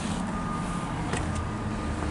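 A steady low engine rumble, like a vehicle idling, with one light click about a second in.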